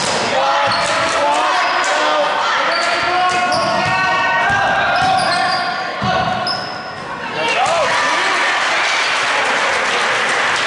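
Game sounds in a gymnasium during a basketball game: several voices shouting, sneakers squeaking on the hardwood floor and a basketball bouncing, all with the echo of a large hall. The voices drop away briefly about seven seconds in.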